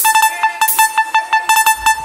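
A held, horn-like synthesized tone over a fast, even ticking of about seven clicks a second, with the bass dropped out: a DJ transition effect in a forró music mix.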